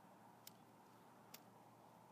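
Near silence with two faint sharp ticks a little under a second apart, from a bundle of steel wool pads catching fire and throwing sparks.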